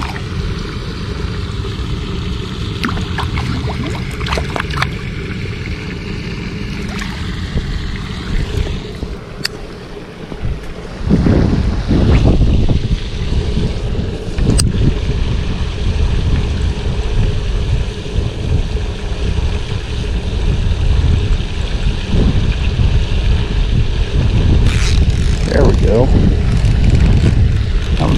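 Wind buffeting the microphone outdoors, a low steady noise that gets much louder about a third of the way in.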